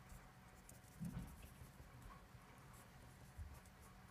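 Faint scratching of a marker pen drawing short hatch strokes on paper. There is a soft low thump about a second in, and a smaller one near the end.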